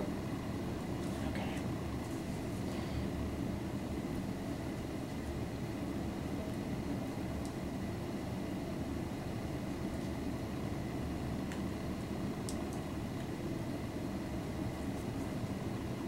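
Steady low background hum of the treatment room, with a faint steady high tone and a couple of faint clicks about twelve seconds in.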